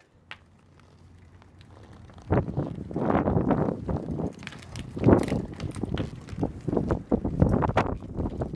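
Hyper Wave 26 mountain bike rolling over rough concrete, its parts rattling. It is nearly quiet at first, then from about two seconds in comes an irregular run of noisy surges with many clicks and knocks.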